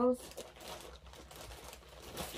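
Plastic packaging crinkling and rustling faintly as it is handled.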